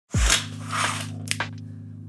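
A deep hit with a falling pitch right at the start, then a hiss that swells and fades and a sharp click just past the middle, over a steady low hum from a computer fan.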